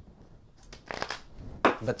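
A deck of oracle cards being shuffled by hand: a run of quick papery flicks starting about half a second in.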